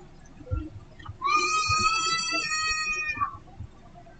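A drawn-out, high-pitched animal call in the background, lasting about two seconds and starting about a second in, steady in pitch and dropping at the end.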